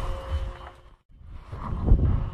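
Low rumble of a boat at sea with wind on the microphone, broken by a brief dropout to near silence about halfway through.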